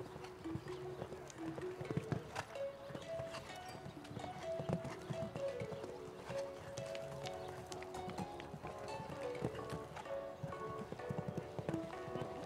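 Hoofbeats of a horse cantering on sand arena footing, irregular thuds, under background music carrying a stepped melody.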